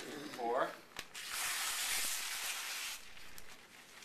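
A stack of newspaper pieces being torn in half in one long rip of about two seconds, starting about a second in, after a brief voice.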